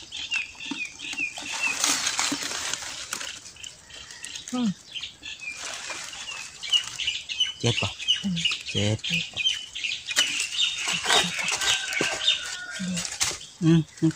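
Hands scraping and digging through dry, crumbly soil and dead leaves, an irregular rustling and scratching, while birds chirp in short repeated calls in the background.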